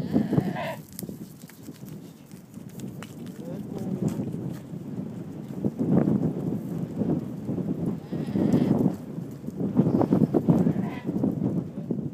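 Goats bleating several times, with calls spread through the stretch and a low rustle of movement between them.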